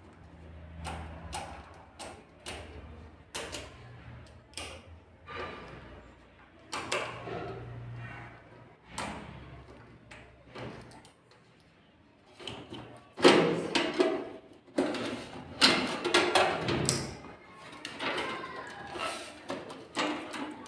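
Screwdriver and hands working on a desktop PC's sheet-steel case: scattered clicks and light metal clunks as screws are undone. Louder clunks and rattles come in the second half as the hard drive is worked loose from its bay.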